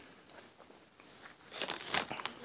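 Quiet at first, then about one and a half seconds in, the plastic packaging of a Peeps marshmallow candy box crinkling loudly as it is handled.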